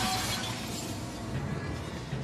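Glass shattering as a trailer sound effect: a bright crash right at the start that trails off within about half a second, over dramatic background music with low held notes.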